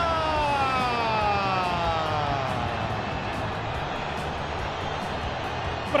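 A man's long, held goal shout, one sustained vowel falling slowly in pitch over about three seconds before fading, over steady background noise.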